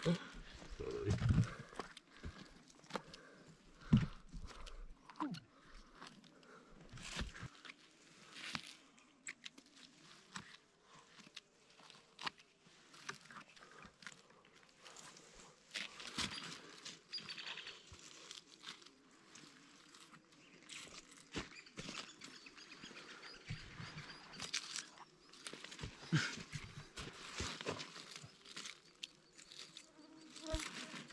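Close, irregular rustling and crackling of burnt forest-floor litter as morel mushrooms are cut with a small knife and picked by hand, with a few louder knocks in the first few seconds.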